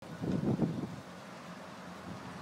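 Outdoor background noise with wind on the microphone: a low rumbling in the first second, then a steady low hum.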